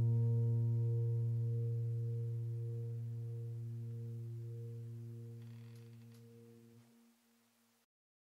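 Background piano music: one low sustained piano chord slowly dying away, fading to silence about seven seconds in.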